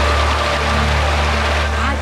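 Steady rushing noise of stream water running over rocks, with a low steady hum underneath.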